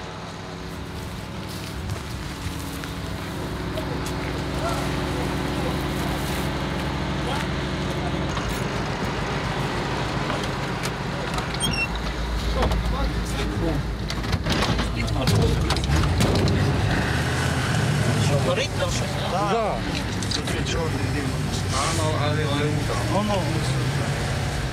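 A utility truck's engine running and pulling away, heard from inside the cab. The engine note changes about eight seconds in, and a heavier low rumble comes a few seconds later as the truck picks up speed.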